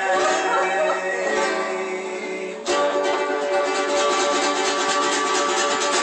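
Two acoustic guitars strumming chords, with a new chord struck about two and a half seconds in and left ringing.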